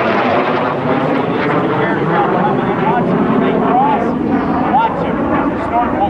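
Two early jets, a T-33 Shooting Star and an F-86 Sabre, flying overhead in close formation, their turbojet engines making a loud, steady rushing noise.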